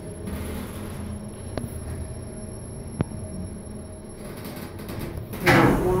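Kone MonoSpace lift car arriving at a floor: a steady low hum with a thin high whine from the drive, two sharp clicks, and the whine cutting out about four seconds in as the car stops. Its sliding doors then open.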